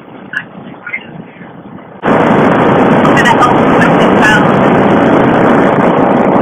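Wind buffeting a helmet-mounted action camera's microphone on a motorcycle at highway speed. It jumps suddenly about two seconds in to a very loud, steady rush that swamps everything, with a voice only faintly heard under it.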